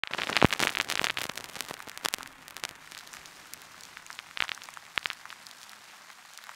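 Crackle and pops of vintage surface noise, thick for the first two seconds and then thinning to scattered clicks, with a few louder pops among them.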